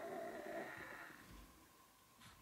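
A sleeping bear cub snoring softly, fading away a little over a second in.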